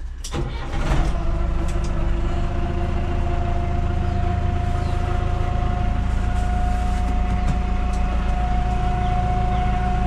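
Ford 7740 tractor's diesel engine heard from inside the cab. It picks up speed about a second in and then runs steadily, with a constant whine over the drone.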